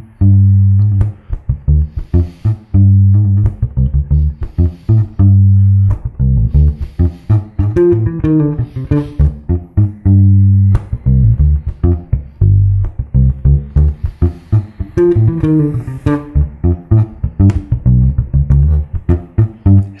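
Electric bass guitar playing a D minor groove: held low notes broken up by quick runs of short notes, with fast higher phrases from a learned lick inserted into the groove about eight seconds in and again around fifteen seconds.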